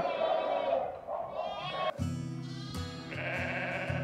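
Sheep bleating in a barn. About halfway through, background music with plucked guitar notes comes in and carries on.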